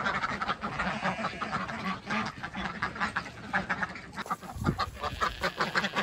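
A flock of domestic ducks quacking continually, many short calls overlapping as they come out of their pen.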